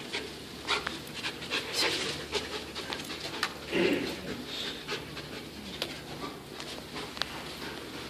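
A scent-detection dog panting and sniffing in short, irregular bursts as it works close along the chairs, searching for bed bug scent.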